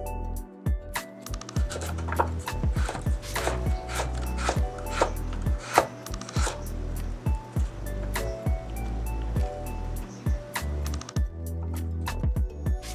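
A broad-bladed kitchen knife chopping carrots into matchsticks on a bamboo cutting board: quick, irregular knife strikes against the board, over background music.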